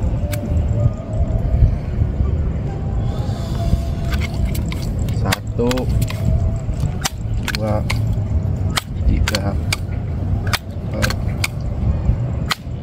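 A rifle being handled and loaded, with a series of sharp metallic clicks at irregular intervals from about four seconds in, over a steady low rumble.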